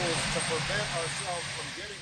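Steady rushing outdoor noise with a man's voice heard faintly through it, as from a podium speech picked up at a distance.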